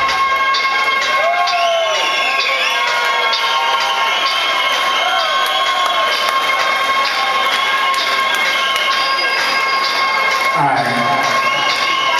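Club crowd cheering and whooping over a breakdown in an electronic dance track. The kick drum and bass drop out at the start, leaving a steady held high synth tone. A man's voice comes in near the end.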